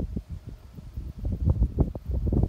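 Wind buffeting and handling noise on a phone's microphone: an irregular low rumble with short thumps, loudest about a second and a half in.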